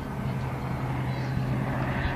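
A steady low engine hum, with a hiss that builds a little near the end.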